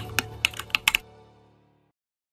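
Keyboard typing sound effect: a quick run of key clicks in the first second, over the fading tail of soft intro music that dies away by about two seconds in.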